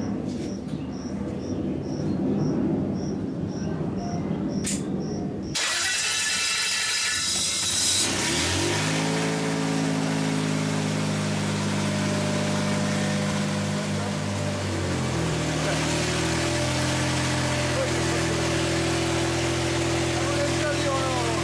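Biogas-fuelled car engine driving a belt-coupled generator: it starts about a third of the way in, settles to a steady running note, and its note shifts about two-thirds of the way in, then runs steadily.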